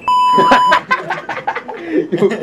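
A loud, steady electronic beep, a flat bleep tone held for about two-thirds of a second, then cut off. Right after it, someone laughs.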